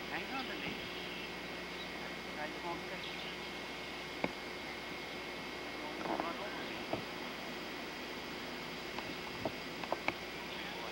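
Steady hiss of outdoor ambience on old VHS camcorder tape, with faint distant voices at the start and again around six seconds, and a few sharp clicks.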